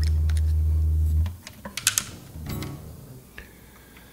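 A steady low hum cuts off suddenly about a second in, followed by a few sharp clicks and a brief pitched sound.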